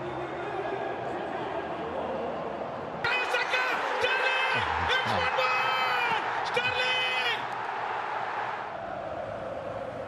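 Stadium crowd noise, with a man's excited, high-pitched football commentary shouting over it for about four seconds, starting about three seconds in.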